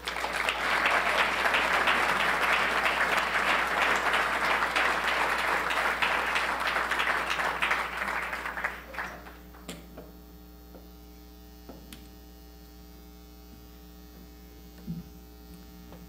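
Audience applause for about the first nine seconds, dying away, followed by a low steady hum.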